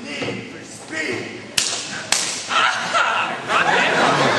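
Two sharp cracks about half a second apart, then a crowd of people talking and laughing.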